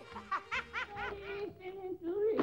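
A high-pitched voice laughing in a quick run of about four short, pitched syllables in the first second, over a faint held note.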